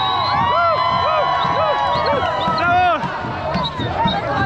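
A large street crowd shouting and cheering, many voices overlapping, with short rising-and-falling calls repeated over and over.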